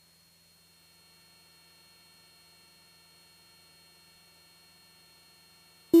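Faint steady hum with a few thin steady tones, close to silence. Right at the very end a loud, steady, single-pitched tone cuts in.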